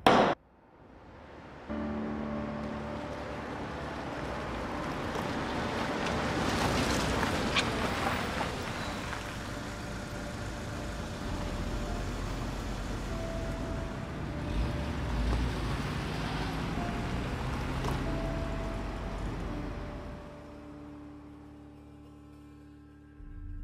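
Film soundtrack: one sharp knock right at the start, then a swelling wash of noise like surf or traffic, with a few soft sustained music notes over it that fade toward the end.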